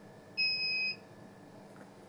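Digital hanging scale giving one high electronic beep about half a second long, the signal that the weight reading has settled.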